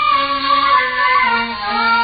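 Music with a singing voice holding long notes over instrumental accompaniment, a sung ballad-style interlude of the kind that carries the story between scenes.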